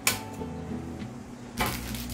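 A sharp click near the start, then a short scratch about a second and a half in as a pencil marks the wooden drawer front against a tape measure, over faint background guitar music.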